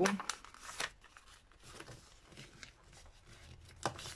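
A sheet of paper pattern being folded into pleats by hand: soft paper rustling with a few short crinkles, and one sharper paper rustle just before the end.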